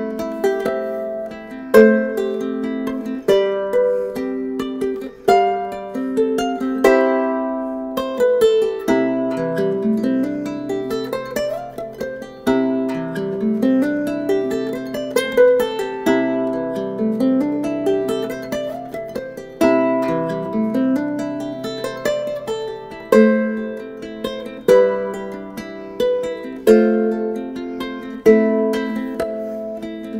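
aNueNue harp ukulele played fingerstyle as a solo: plucked melody notes and chords. From about nine seconds in to about twenty-three, a low bass note rings on under repeated rising arpeggios.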